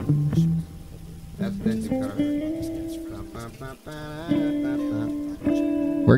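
Guitar playing a few single held notes one after another, loose and halting rather than a full band in time: a song start that breaks down and is then restarted.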